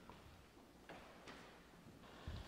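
Near silence: quiet room tone with two faint clicks close together about a second in.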